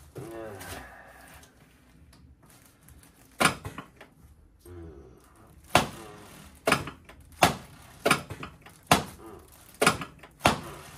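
A series of about seven sharp thuds from a chiropractic adjusting table, as the chiropractor thrusts down by hand on the patient's thoracic spine. The first comes a few seconds in, and the rest follow in quick succession, roughly one a second.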